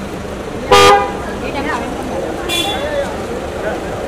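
A car horn honks once, short and loud, just under a second in, over background chatter; a second, higher and fainter toot sounds a little before three seconds.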